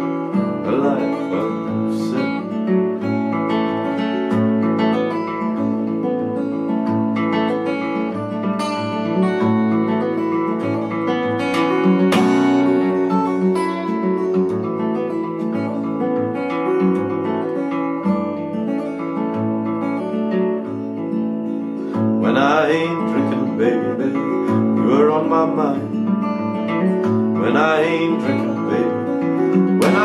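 Acoustic guitar played fingerstyle, an instrumental passage of picked melody notes over an alternating bass. From about three-quarters of the way through, a man's voice comes in over the guitar in short sung phrases.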